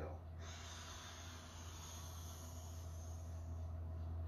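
A man drawing one long, deep breath in through his open mouth, an airy hiss lasting about three seconds: the slow full inhale of a mouth-breathing breathwork round. A steady low hum runs underneath.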